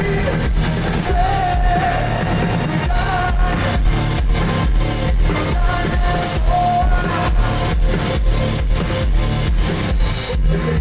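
Rock band playing live through a PA: electric guitars, bass guitar, drums and keyboards together, over a steady drum beat.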